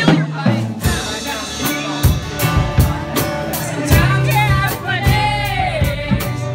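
Live rock band playing: strummed acoustic guitar, a drum kit keeping the beat, and a male lead voice singing, with the drumming filling in about two seconds in.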